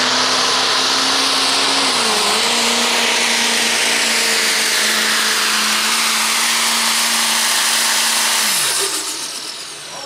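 Turbocharged diesel pickup engine held at high revs under full load while pulling a sled, with a loud hiss over it. The pitch dips briefly about two seconds in and then recovers. Near the end the revs drop sharply and the sound falls away as the pull ends.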